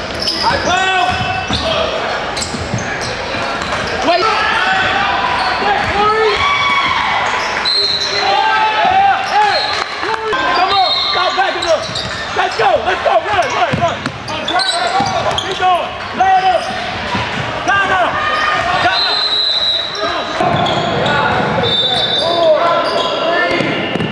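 Basketball being played on a hardwood gym floor: the ball bouncing, several high-pitched sneaker squeaks, and indistinct shouts from players, all echoing in a large gym.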